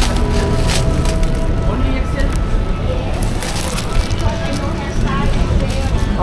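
Clear plastic bag crinkling and crackling in short bursts as a pair of foam slides is pulled out of it, over loud, steady market background noise.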